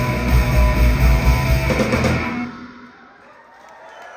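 Live rock band of electric bass, electric guitar and drum kit playing loudly, then stopping abruptly about two seconds in. The room is much quieter after that, with a few faint sharp sounds near the end.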